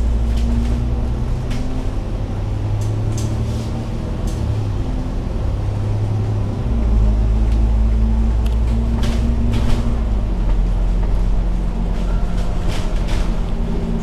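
Engine and drivetrain of a KMB Alexander Dennis Enviro500 MMC double-decker bus droning under way, heard from inside the upper deck. The low hum shifts in pitch and strength a few times, with a handful of brief rattles and clicks from the bodywork.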